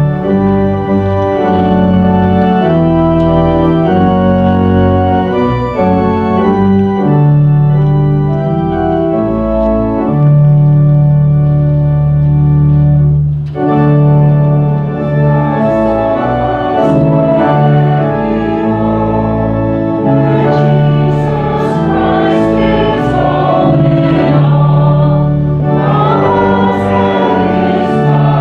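Church organ playing a hymn in sustained chords moving at a steady hymn pace, with a short break between phrases about halfway through.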